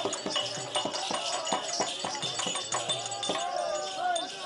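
Therukoothu street-theatre music: a hand drum beating a quick rhythm of sharp strokes, with bells jingling throughout and a sliding melodic line toward the end.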